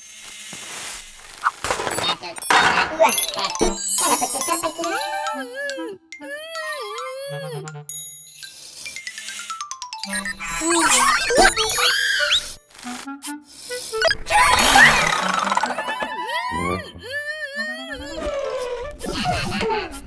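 Cartoon soundtrack: bouncy children's music with wordless, sing-song chatter from little robot characters and comic sound effects.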